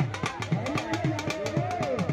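Dhol beaten in a fast, steady rhythm, about four to five strokes a second, each low stroke dropping in pitch, with a voice carrying over it.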